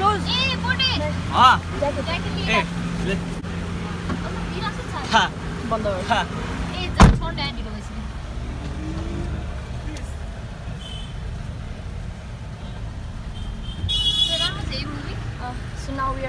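A car's engine runs with a low steady hum under excited voices and laughter. A single sharp knock comes about seven seconds in, followed by a quieter steady rumble and a brief high tone near the end.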